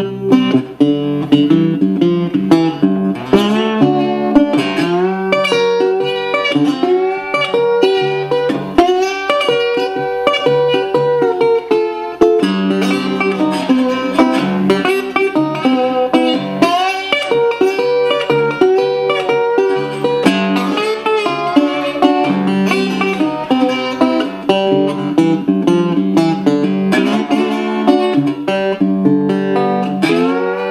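National Radio-Tone resonator guitar played with a slide and fingerpicked, its notes gliding up and down along the strings. It is heard amplified through its installed pickup and a small battery-powered amp set on acoustic clean.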